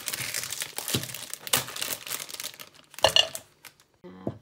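Crinkling and rustling of packaging handled close by, then a single sharp clink a little after three seconds in.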